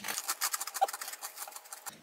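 Two people chewing mouthfuls of crunchy grain-free Three Wishes cocoa cereal puffs: a quick, irregular run of crisp crunches.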